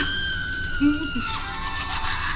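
Musical Halloween greeting card's sound chip playing through its tiny speaker as the card is opened: a long held high note that drops to a lower note about two-thirds of the way through.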